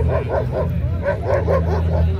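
German shepherd barking in a quick run of short, high yips, about four or five a second, over a steady low hum.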